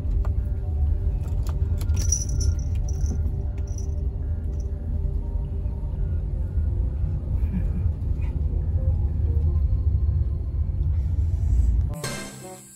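Steady low rumble of a car moving slowly along a road, with scattered clicks and a few short high chirps a couple of seconds in.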